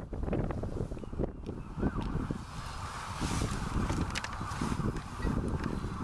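Wind buffeting the microphone, a steady low rumble, with a few light knocks and rustles.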